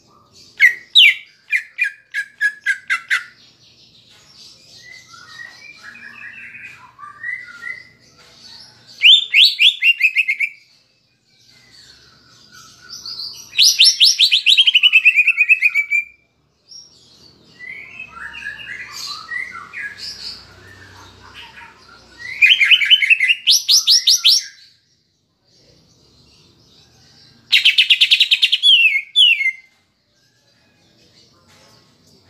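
Male greater green leafbird (cucak ijo) singing. Loud bursts of rapid repeated notes that slide down in pitch come about five times, with softer chattering warbles between them. The song is stuffed with phrases copied from the kapas tembak bird.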